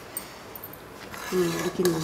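A quiet first second with one light click near the start, then a woman's voice speaking from a little past halfway.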